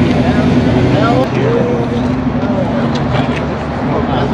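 A car engine idling steadily, a low even hum, under the chatter of people talking nearby.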